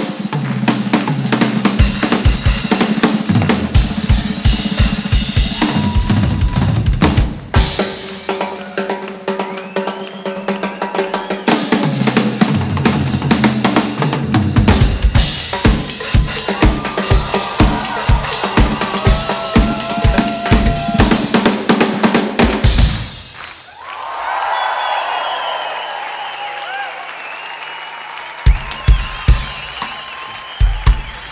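Drum kit and hand percussion playing a dense, fast drum and percussion duet, with bass drum, snare and cymbal strokes. About 23 seconds in the drumming breaks off and audience cheering fills the gap, then loud drum hits come back near the end.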